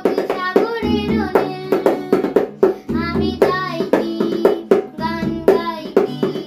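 A child singing a Bengali song in phrases, accompanied by a strummed acoustic guitar and a tabla played with quick, crisp strokes.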